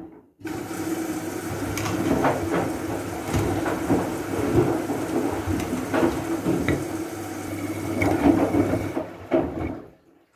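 Siemens front-loading washing machine on a gentle wool wash: the drum turns, water sloshes and the laundry drops with soft thuds. The sound cuts out for a moment just after the start and fades away near the end.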